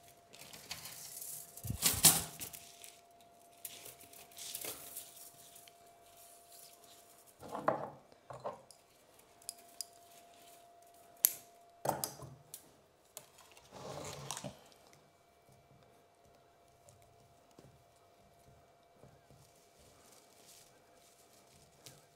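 Bonsai wire being handled while wiring a pine: irregular light metallic clicks and clinks with short rustles, the sharpest click about two seconds in.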